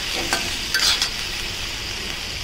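Tomatoes, shallots and garlic frying in oil in an iron kadai, sizzling steadily, while a steel spatula stirs and scrapes them against the pan, with a few scrapes in the first second.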